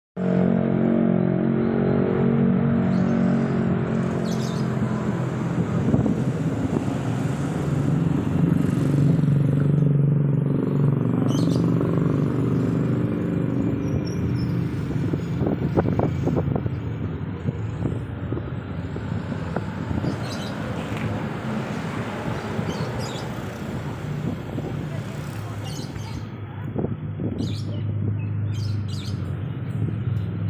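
Outdoor background with a steady engine hum, strongest at the start, and indistinct voices. A few short bird chirps come through.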